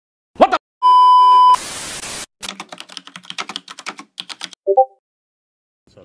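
A loud steady 1 kHz censor bleep cuts off a swear word, followed by a short burst of static hiss. Then comes about two seconds of rapid computer keyboard typing clicks and a brief pitched blip.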